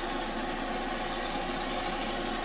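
Steady hiss with a faint hum underneath, from equipment running at a glassblowing bench.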